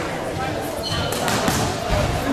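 Kickboxing gloves landing in a quick flurry of three or four sharp slaps about halfway through, over voices of spectators and corners.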